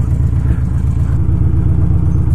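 Victory Cross Country motorcycle's V-twin engine idling steadily, a low, even pulsing.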